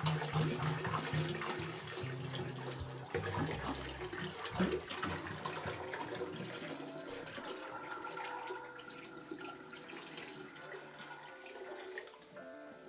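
Water poured from a plastic jerry can into a bathroom sink, splashing steadily as the basin fills with the dirty waste water siphoned out of a reef tank. The pour gets quieter over the last few seconds.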